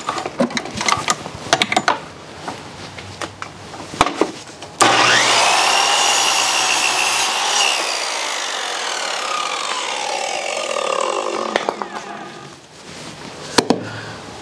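Electric circular saw. Handling clicks and knocks come first; about five seconds in, the motor starts suddenly with a whine that climbs to full speed and holds for a couple of seconds, then after release it winds down with a falling whine over about five seconds.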